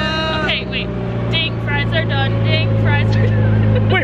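Amphicar amphibious car's engine running steadily while it cruises on the water, a constant low drone. Brief snatches of talk sit over it, and a held musical tone dies away about half a second in.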